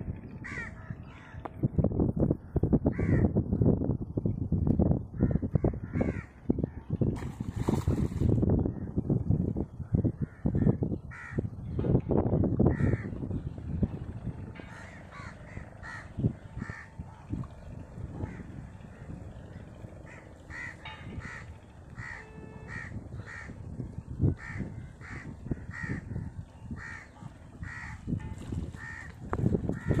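Birds calling in many short, repeated calls, over a low rumbling noise that is loudest in the first half.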